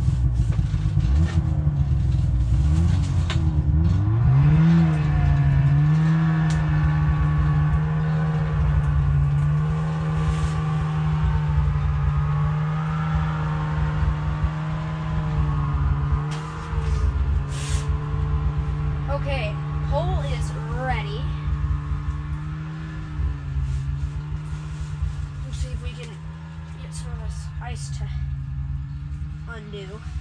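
A small engine running loud and steady, its pitch climbing as it revs up over the first few seconds, then holding with slight wavers.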